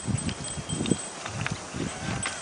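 A jallikattu bull goring a mound of loose soil and stones with its horns in training: irregular thuds and scraping of earth, with a faint high ringing tone.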